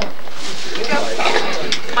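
Several people talking at once, a dense babble of overlapping voices with no one voice standing out.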